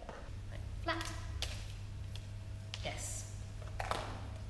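A woman's voice speaking a few brief, quiet words, over a steady low hum, with a few light taps.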